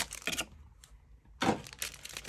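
Foil trading-card packs and the cardboard blaster box being handled: a few light clicks and rustles, then a short sharp crinkle about a second and a half in as the packs are pulled out.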